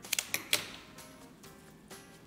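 A quick cluster of sharp clicks and snaps in the first half-second from handling flower stems at the arranging table, over soft background music.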